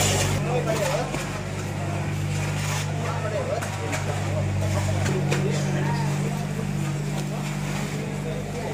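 Several people talking in the background over a steady low motor hum.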